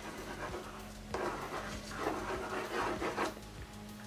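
Water-soluble soft graphite stick scribbling on watercolor paper: a run of scratchy strokes starting about a second in and lasting around two seconds, over a faint steady hum.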